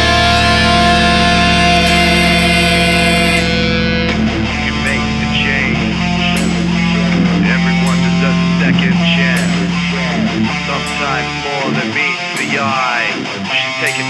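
Heavy metal track with distorted electric guitars and bass holding sustained chords. About four seconds in, the full sound thins to guitar lines that bend up and down over faint regular ticks, and the low bass drops out near the end.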